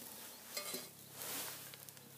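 Faint rustling and handling sounds of fingers picking a cooked lamb chop out of a small metal bowl, in two short bouts.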